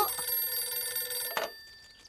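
Cartoon telephone ringing with a steady tone that fades away. About a second and a half in there is a single click as the receiver is picked up.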